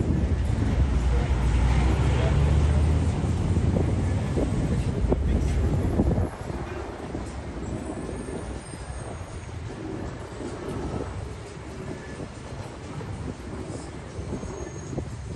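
Street traffic: a loud, steady low rumble of passing vehicles for about the first six seconds, which cuts off suddenly, followed by quieter traffic ambience for the rest.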